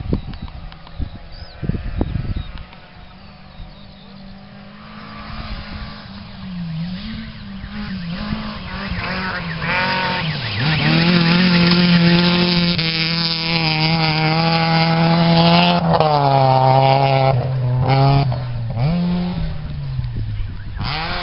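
Rally car on a gravel stage, its engine at high revs growing louder as it approaches and passes close by. Near three quarters of the way through the revs drop sharply, then a few quick gear changes and rises in pitch as it pulls away.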